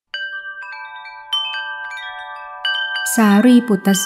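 Chimes struck several times, each bright pitched note ringing on and overlapping the others. A voice starts reciting over them near the end.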